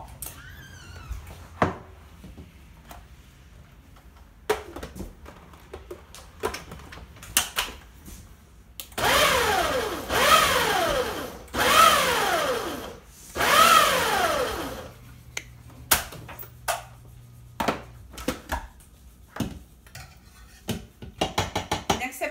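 Electric food processor pulsed four times in quick succession, each burst a motor whine that rises and falls in pitch, chopping fresh strawberries coarsely. Scattered clicks and knocks come before and after as the jar is handled.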